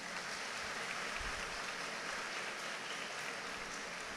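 Audience applauding faintly and steadily.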